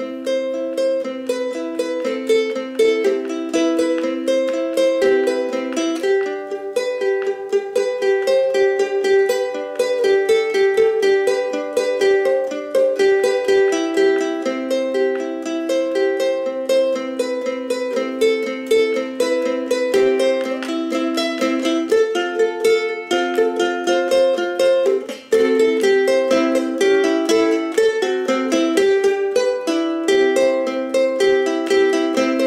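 Solo ukulele instrumental: a continuous run of plucked chords and melody notes, with a brief gap about 25 seconds in.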